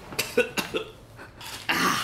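A person's short coughing sounds, a few in quick succession, then a louder breathy burst near the end.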